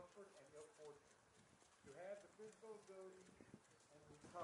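Faint, distant voices of people talking, barely above near silence.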